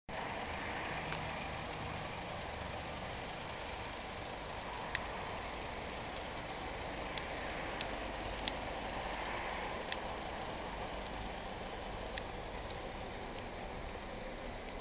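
Steady outdoor background noise with a low rumble, broken by a few short, sharp clicks.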